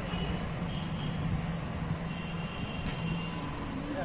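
Steady background hum of road traffic and vehicle engines, with a faint, thin high tone lasting about a second just past the middle.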